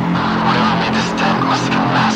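Dark electronic intro of a deathstep track: a low held drone of several steady tones under a harsh, rushing noise layer that swells and streaks.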